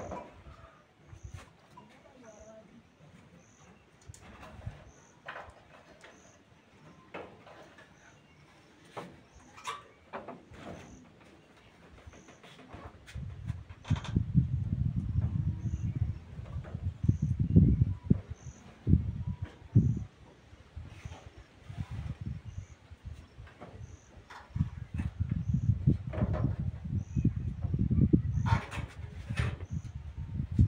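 A curtain being hung over a doorway: scattered light clicks and fabric rustles. From about halfway, loud low rumbling comes in irregular gusts.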